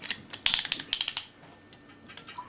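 A rapid run of light clicks and clinks from small hard objects, about a dozen packed into under a second, then stopping.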